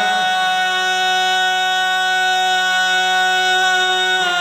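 Harmonium holding one steady chord, its reeds sounding a low note with a stack of unwavering tones above it, with no wavering melody over it.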